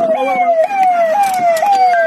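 Electronic siren-like tone, each cycle jumping up in pitch and then falling, repeating about twice a second.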